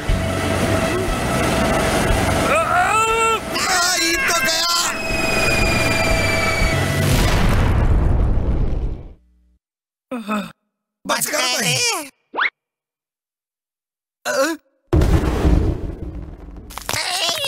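Cartoon soundtrack: a dense, steady noise with music and a character's groaning voice, cutting off suddenly about nine seconds in. After that come a few short vocal outbursts separated by silence, then a loud burst of sound near the end.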